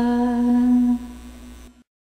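A singing voice holding the final note of a devotional song: one steady tone that drops sharply about a second in, then trails off faintly and stops just before the end.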